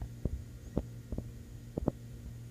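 A steady low hum with about seven soft, irregular thumps.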